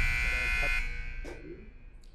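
Electronic buzzer giving a steady, high-pitched tone that stops about a second in and then rings away, signalling the end of a timed debate turn.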